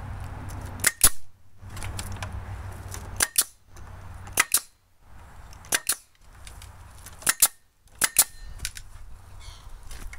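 Bostitch pneumatic nailer firing nails through pallet boards into a 2x4 frame: about six or seven sharp cracks spaced a second or so apart, most of them a quick double crack.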